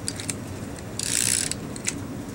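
Adhesive tape runner drawn along cardstock: one rasping zip of about half a second in the middle, with small clicks of the dispenser before and after.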